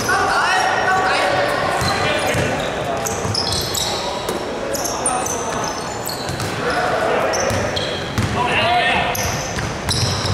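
Basketball game in a large echoing gym hall: a ball bouncing on the hardwood court, many short high-pitched sneaker squeaks, and players calling out.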